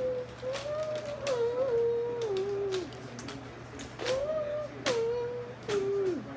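A voice humming long wordless notes that waver and slide down in pitch, in a few phrases that each start abruptly.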